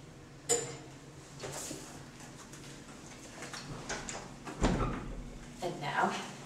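A clothes hanger and closet fittings being handled: a sharp click about half a second in, a few light knocks, then a dull thump near five seconds in.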